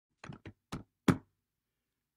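Four short knocks in quick succession, the last one the loudest.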